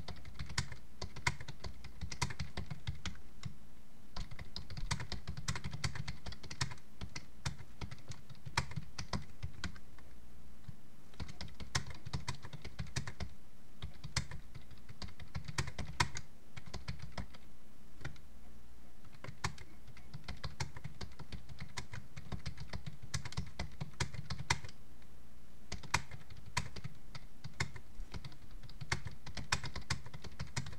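Typing on a computer keyboard: a fast, uneven run of key clicks with short pauses between bursts.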